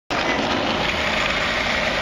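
Skateboard wheels rolling on rough concrete: a steady, even rolling noise with no distinct clacks or impacts.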